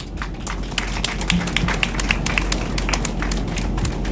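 Scattered clapping from a small audience, irregular claps several times a second over a steady low rumble.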